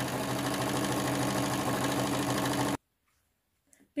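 Singer Quantum electronic sewing machine running steadily at speed as it stitches a fabric seam, then stopping abruptly about three seconds in.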